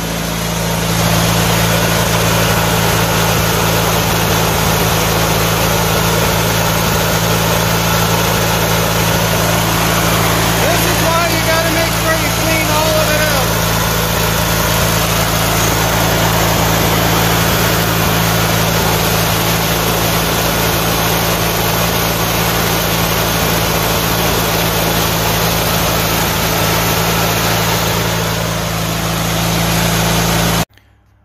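Lawn tractor's air-cooled engine running steadily at idle with its shrouds off. It is being left to idle while the carburettor is tuned.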